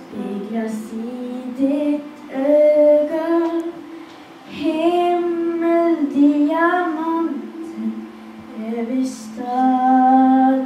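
A young girl singing a slow Christmas ballad into a handheld microphone. She sings in phrases with long held notes and short pauses between them.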